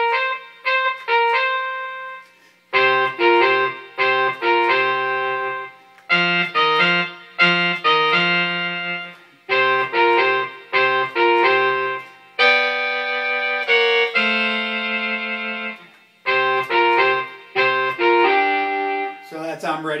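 Synthesised horn section from a Roland SC-55 sound module, driven by an electronic valve instrument MIDI controller: trumpet on top, tenor sax a third below and baritone sax an octave below, playing a classic R&B blues riff together in short phrases with brief rests between.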